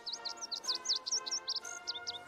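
Birds chirping in a rapid series of short, high sweeping calls over a sustained chord of background music.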